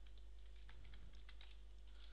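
Computer keyboard being typed on: a string of faint, irregular key clicks over a steady low hum.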